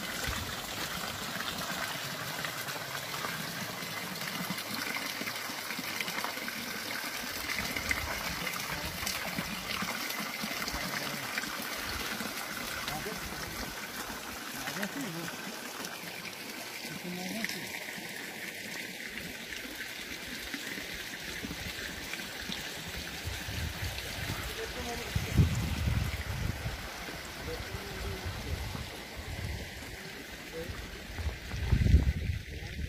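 Hot spring water trickling and running steadily as a shallow stream, with low thumps and rumbling near the end.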